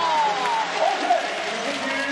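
Arena crowd applauding and cheering after a home-team basket, with voices mixed in.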